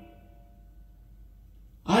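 Recorded jazz-pop ballad played through large Yamaha FX-1 hi-fi loudspeakers: a held chord fades away into a quiet pause. Just before the end the band and a male voice come back in sharply.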